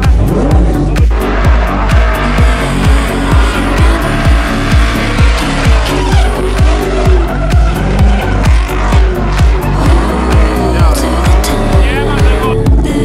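Music with a steady beat, about two a second, laid over a drift car's engine revving and its tyres squealing as it slides sideways.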